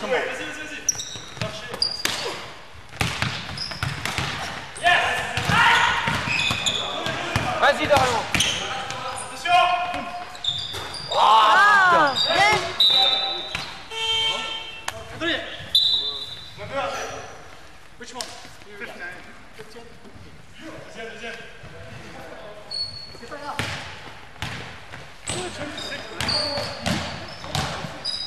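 Live basketball game sounds: a ball bouncing on a hardwood gym floor with repeated short knocks, mixed with players' shouts and calls. The sound is quieter for a few seconds past the middle.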